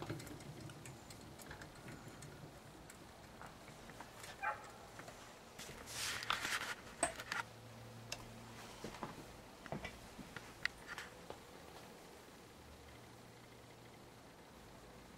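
Faint scattered clicks and light knocks of handling, with a short patch of rustling and clicking about six to seven seconds in, over a faint low hum.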